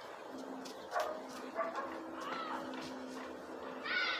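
A dog giving three short barks and yips, the last one rising and falling in pitch.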